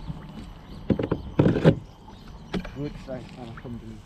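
Handling knocks on a fishing kayak as the landing net and catch are put away, with a sharp knock about a second in and a loud, short burst of noise about a second and a half in.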